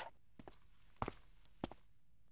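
Three faint, sharp taps roughly half a second apart, the loudest about a second in.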